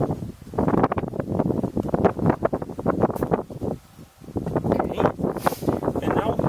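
Wind buffeting the camera microphone in uneven gusts, with a short lull about four seconds in.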